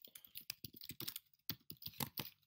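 Typing on a computer keyboard: a fast, uneven run of keystroke clicks.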